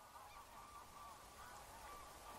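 Very faint, repeated bird calls like distant honking, slowly growing louder.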